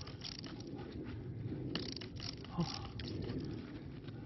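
Faint crunching and scraping of grit as a gloved hand handles a freshly dug stone blade and soil, with a few small crackles near the middle. A man says a short "oh" about two and a half seconds in.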